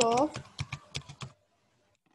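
A quick run of keystrokes on a computer keyboard, about eight clicks typing a word, stopping about a second and a half in.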